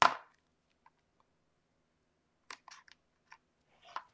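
A sharp click right at the start, then a few faint short ticks and rustles about two and a half seconds in, as a strip of foam adhesive tape and card pieces are handled on a craft mat.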